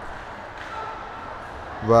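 Low, steady background noise of a fight venue with a faint distant voice about half a second in; a man's voice starts speaking near the end.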